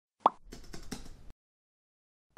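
Intro sound effects: a short pop about a quarter second in, then about a second of rapid light clicks like keyboard typing.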